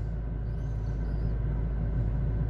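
Steady low rumble heard inside a car's cabin.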